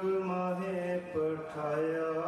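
A man's voice chanting a slow devotional chant into a microphone, holding long steady notes, with a brief break and a change of pitch a little over a second in.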